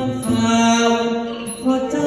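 Male likay (Thai folk opera) singer singing a slow, drawn-out vocal line through a stage microphone, holding long notes that step from one pitch to the next.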